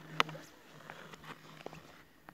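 Sharp clicks from skating on a frozen lake's clear ice: one loud click shortly after the start, then a few faint ticks.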